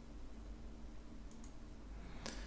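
Quiet room tone with a faint steady low hum, and a couple of faint computer mouse clicks a little past the middle.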